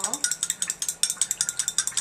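A rapid, continuous run of light, high-pitched clicks and rattles, several a second, as quench oil accelerator is dispensed from a small plastic dispenser into a beaker of quench oil.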